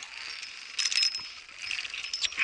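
Metal ropes-course safety carabiners clinking and scraping against a steel cable as the climber moves along, with a cluster of clinks about a second in and a few more near the end.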